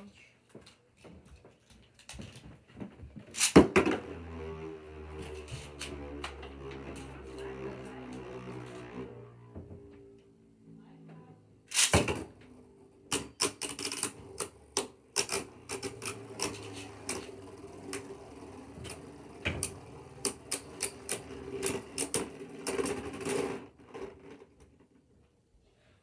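Beyblade Burst spinning tops launched into a plastic stadium: a sharp snap at the launch, then a steady whirr as the tops spin. A second hard launch comes about twelve seconds in, after which the tops clash repeatedly with quick clicks and rattles until they wind down and fall silent near the end.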